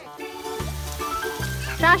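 Background music with a bass line, over the faint hiss of a garden hose spray nozzle spraying water onto a car. A child's name is called near the end.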